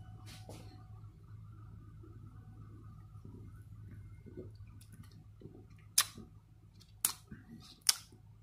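A person sipping beer and then smacking their lips in tasting, heard as three sharp clicks about a second apart near the end, under a low steady hum.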